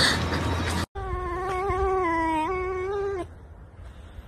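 A pet animal's whining call cut off short under a second in, then one long drawn-out wail held for about two seconds at a steady pitch. Its pitch steps up briefly past the middle before it stops.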